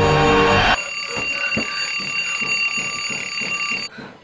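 Alarm clock ringing steadily with a fast, even pulse, starting about a second in as background music cuts off.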